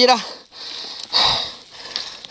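Heavy, noisy breathing close to the microphone from a mountain biker who is down and hurting after a crash: two long breaths, the second louder.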